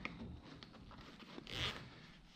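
Zipper on the front pocket of a Local Lion mountain-bike backpack being pulled open: one short, faint zip about one and a half seconds in.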